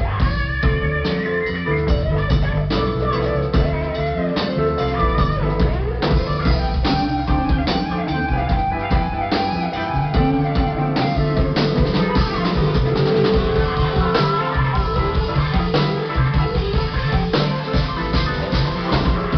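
Live band music: a guitar playing over a drum kit with a steady beat.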